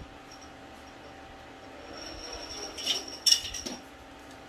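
Handling of painter's tape and plastic letter backing at a car's hood: light crinkling with a thin high squeak from about two seconds in, then a few sharp clicks and crackles about three seconds in, the loudest of them near the end.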